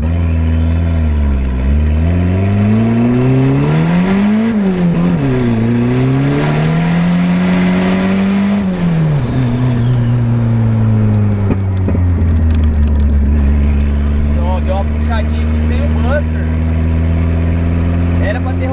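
Engine of a turbocharged VW Gol revving hard under acceleration, heard from inside the cabin. Its pitch climbs and drops at two upshifts, about four and a half and nine seconds in, then holds steady as the car cruises.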